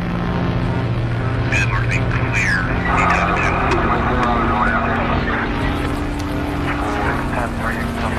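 A steady low engine drone with indistinct voices rising and falling over it from about a second and a half in.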